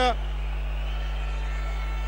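A steady low electrical hum with faint, even background noise, and no distinct events.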